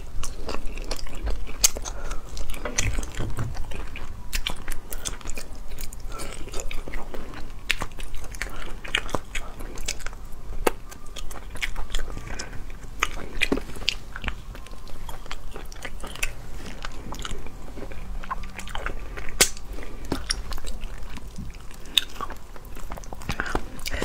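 Close-miked eating of a braised rabbit head: chewing and sucking meat off small bones, with many short sharp clicks and smacks.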